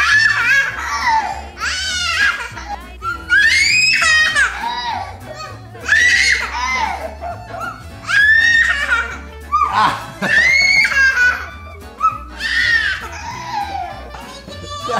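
A toddler giggling and squealing with high-pitched laughter in repeated bursts, one every second or two; a man laughs along near the end.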